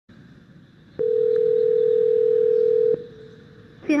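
Telephone ringback tone over the line of an outgoing call: one steady ring of about two seconds, starting about a second in, while the call waits to be answered.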